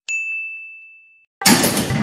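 A single bright ding, a chime sound effect struck once and fading out over about a second. About a second and a half in, a louder, noisy sound starts suddenly.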